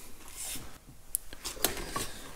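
Soft handling sounds of tools being moved in a paper-lined wooden crate: light rustling and a few small clicks in the second half.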